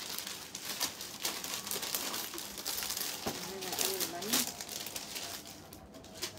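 Crinkling and rustling of plastic packaging and clothing being handled, in irregular quick crackles.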